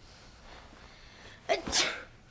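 A woman's short, sharp burst of breath about one and a half seconds in, sneeze-like, after a quiet room.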